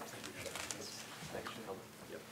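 Faint, low murmured talk from a few people, in short scattered fragments, as a group exchanges handshakes.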